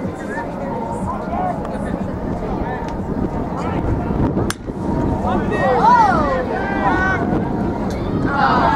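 Wind rumbling on the microphone under spectators' voices at a baseball game, with a single sharp crack from home plate about four and a half seconds in as the pitch arrives, followed by loud shouts from the crowd.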